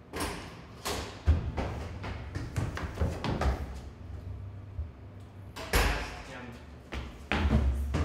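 A stairwell door opening and banging shut, with a series of heavy thuds and knocks in a block-walled stairwell; the loudest bang comes just before the six-second mark.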